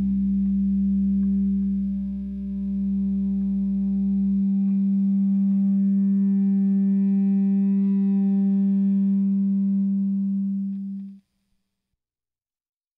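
Closing drone of a rock song: a distorted electric guitar holding one sustained, feedback-like note, with a low bass note that drops out about four seconds in. The sound cuts off suddenly shortly before the end.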